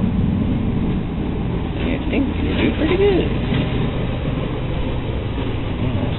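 A steady low rumble runs throughout, with a faint voice in the background about two to three seconds in.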